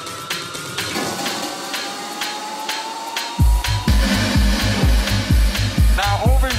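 Tech house / techno DJ mix. The kick drum drops out for a short breakdown with a slowly rising synth tone over it. The four-on-the-floor kick comes back in about three and a half seconds in, at roughly two beats a second.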